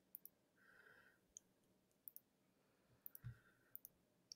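Near silence on a call line, broken by a few faint, brief clicks, several of them close together a little after three seconds.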